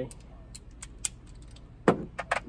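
Small, scattered metallic clicks and taps from a socket wrench with extension being handled, with one sharper click near the end as the tool comes down to the battery terminal.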